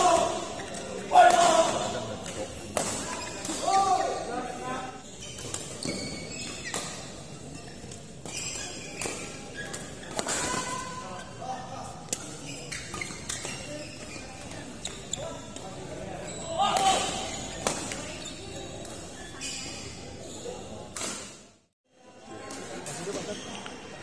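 Badminton doubles rally in a hall: a string of sharp racket strikes on the shuttlecock, shoes squeaking on the court and short shouts from the players, with the hall's echo. The sound cuts out for about half a second near the end.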